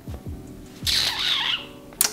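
Soft background music, with a person's breathy exhale about halfway through, a hesitant sigh-like breath while he is undecided.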